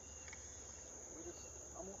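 Steady, high-pitched drone of insects.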